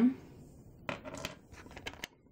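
A few light clicks and taps of small polymer clay charms being handled against a clear plastic compartment organizer box, clustered in the second half.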